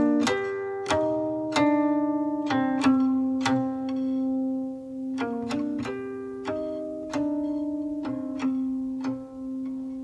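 Late Ming lacquered and zitan guqin played solo: single plucked notes about one a second, each ringing on, a few sliding up or down in pitch.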